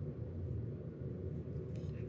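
Low, steady background rumble of room tone, with no distinct event.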